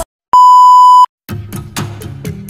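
A steady, loud test-card beep, the tone that goes with TV colour bars, lasting under a second between two brief silences. New music starts up again near the end.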